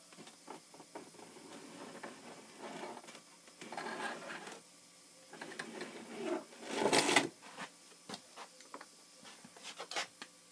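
Handling noise from a heat-formed PVC pipe piece being turned, rubbed and marked on a workbench: irregular rustling and scraping with scattered small knocks, loudest in a short scraping rub about seven seconds in.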